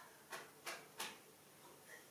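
Three short, sharp clicks about a third of a second apart, the last the loudest, over a faint background.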